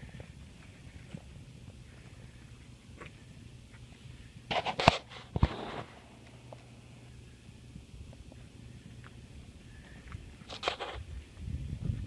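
Handling noise and footsteps from someone walking with a handheld camera: a cluster of loud knocks about five seconds in and a shorter one near the end, over a faint steady low hum.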